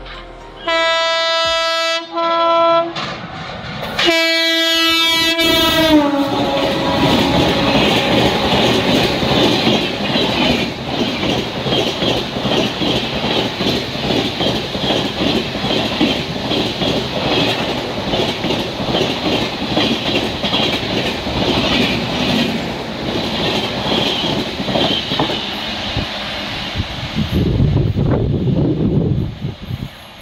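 A passenger train's horn sounds a long blast, then a short one, then a third blast that drops in pitch as the train runs through at speed. A long run of coaches follows, passing with a loud, rapid clatter of wheels on the rails, then a lower rumble as the last coaches go by near the end.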